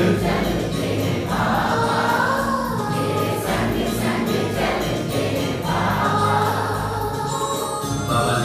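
Hindi devotional song: a group of voices singing with musical accompaniment.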